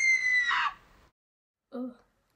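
A high-pitched scream held on one pitch, sagging slightly, that breaks off under a second in.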